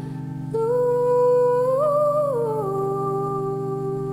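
Pipe organ holding a sustained low chord while a woman sings a long, wordless held melody over it. The voice comes in about half a second in, rises in pitch near the middle and glides back down.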